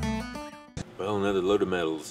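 Acoustic guitar music ringing out and fading away, then a man starts talking about a second in.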